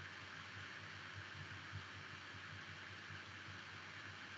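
Faint steady hiss with a low hum from an open microphone line on a video call, with no other sound.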